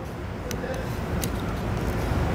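Plastic wiper-blade adapter being pressed up onto a J-hook wiper arm, with two faint clicks over a steady background noise.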